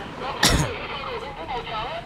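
People's voices talking, with one brief, loud bump about half a second in.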